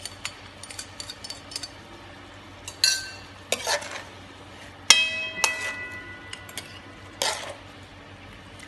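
Cooked minced pork being scooped from a wok onto a ceramic plate: a spatula scraping the pan and clinking against the plate in a run of small clicks and scrapes. A louder clink about five seconds in rings on for about a second.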